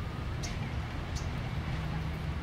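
Outdoor ambience dominated by wind rumbling on the camera microphone, with two short high chirps, one about half a second in and one just after a second.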